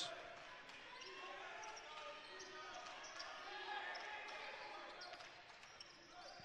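Faint sound of basketball play on a hardwood court: the ball being dribbled, under distant voices from players and the bench.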